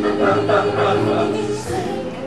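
A live show tune: singing voices, a woman's mouth-open lead with a chorus behind, over long held accompaniment notes.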